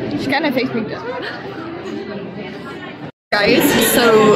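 Chatter of people's voices echoing in a large indoor hall. About three seconds in the sound cuts out briefly, then a voice speaks close to the microphone.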